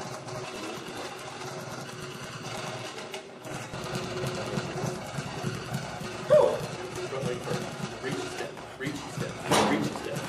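Indistinct talking over busy gym background noise, with a short, loud, rising sound about six seconds in and a sharp burst near the end.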